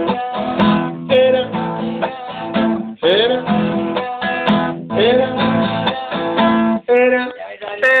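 Acoustic guitar strummed in a steady rhythm, repeated chords ringing, until the playing trails off about a second before the end.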